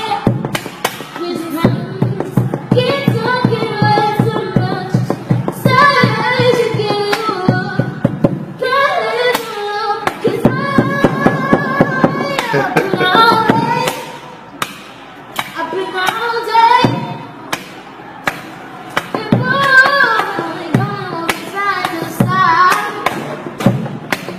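A boy singing a pop song unaccompanied while beating a rhythm with his hands on a classroom desk, sharp taps and thumps running under the voice. The singing is patient and unhurried.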